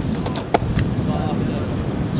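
Steady low rumble of wind buffeting the microphone on an exposed shoreline, with one sharp click a little before the middle.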